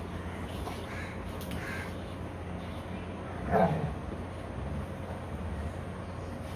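Golden retrievers play-fighting, one giving a single short, loud bark-like yelp about three and a half seconds in, with a couple of fainter short sounds earlier.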